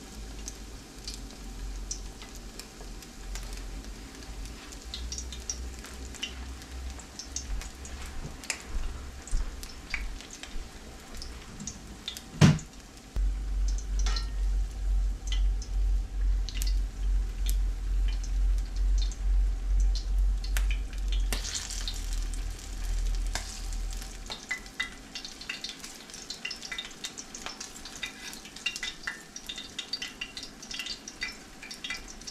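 Beer-battered smelt frying in hot oil in a cast-iron skillet: a steady sizzle with scattered crackles and pops. A sharp knock comes about twelve seconds in, followed by a low pulsing rumble for around ten seconds.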